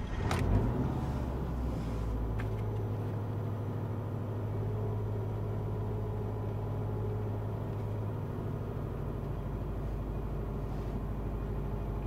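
A 2008 Subaru Impreza's flat-four (boxer) engine starting from cold, heard from inside the cabin. It cranks and catches briefly at the start, rises for about a second, then settles into a steady idle.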